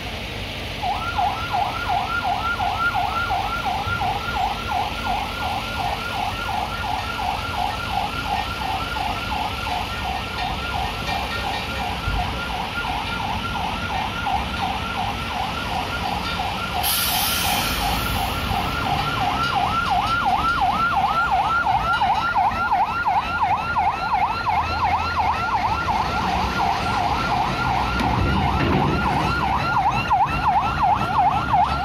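A bus's reversing warning chirper: a fast, even warble of rising chirps, several a second, that sets in about a second in and keeps going, getting louder toward the end. A short hiss breaks in about two-thirds of the way through.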